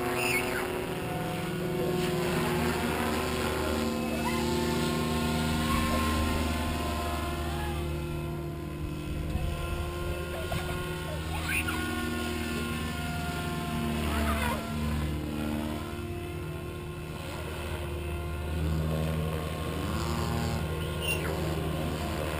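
700-size Goblin RC helicopter flying: a steady rotor and motor tone whose pitch sweeps up and down several times as it passes and turns.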